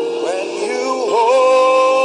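Worship music: sustained keyboard chords under a sung melody line that slides down about a second in and then settles on a long held note.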